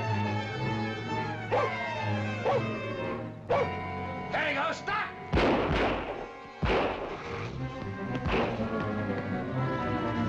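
Orchestral film score playing, broken in the middle by a run of short, loud, sharp sounds, between about three and a half and eight and a half seconds in.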